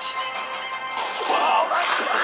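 Video soundtrack playing very loud from the AGM A9 smartphone's four JBL-branded loudspeakers, picked up by the room microphone: music with a sharp crack at the very start, then a man's voice about halfway in.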